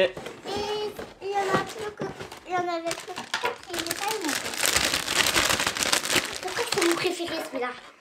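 A plastic blind-bag sachet crinkling as it is pulled out of a cardboard display box and handled, with a dense crackle for a few seconds in the second half. A child's voice is heard briefly near the start.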